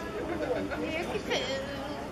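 Indistinct chatter of several people talking at once, as spectators do at a baseball game.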